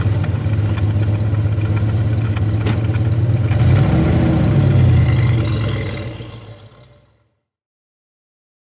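Chevrolet Chevelle SS V8 idling just after start-up, with one short rev about four seconds in. The sound then fades out.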